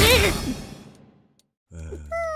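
Cartoon characters' wordless cry, its pitch swooping up and down over a rush of noise, loudest at the start and fading within about half a second. A low hum starts near the end.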